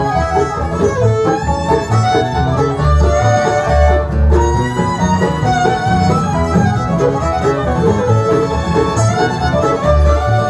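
A bluegrass band playing live: fiddle to the fore over picked banjo, mandolin and acoustic guitar, with an upright bass keeping a steady low beat.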